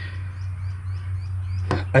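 A steady low hum, with faint short high chirps repeating about five times a second and one sharp click near the end.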